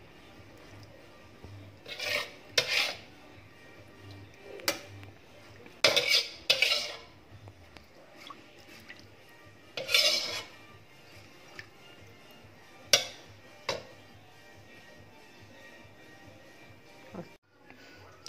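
Metal spoon scraping and clinking against a wok and a metal rice-cooker pot as the cooked tomato mixture is scraped into the rice and stirred: a series of irregular short scrapes and clinks with quiet gaps between.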